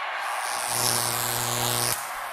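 A steady low held note from the band begins about half a second in, over a wash of arena crowd noise, just before the song starts.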